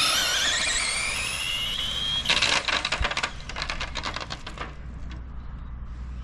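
Team Associated DR10M RC drag car launching at full throttle without the trans brake: the electric motor and drivetrain whine rises steadily in pitch for about two seconds as the car accelerates, then cuts off suddenly. A rapid run of clicks and rattles follows for about two more seconds.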